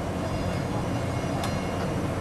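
Steady, dense mechanical running noise from a steamship's machinery, heaviest in the low end, beginning abruptly; a single faint click about one and a half seconds in.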